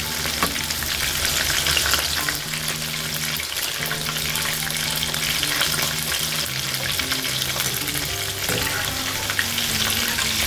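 Batter-coated chicken pieces deep-frying in hot oil: a steady, dense crackling sizzle full of small pops, as a perforated steel skimmer stirs the pieces and lifts them out.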